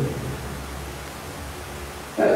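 Room tone in a pause of amplified speech: a steady, even noise with a low hum underneath.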